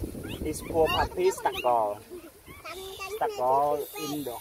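Newborn puppy crying: a string of short, high whining cries that bend and fall in pitch, with a low rumble of wind or handling noise that stops about a second in.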